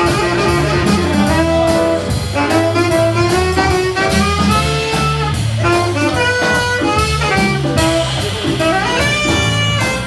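Live jazz combo playing an instrumental break: a tenor saxophone carries the melody over piano, bass and a drum kit keeping time on the cymbals.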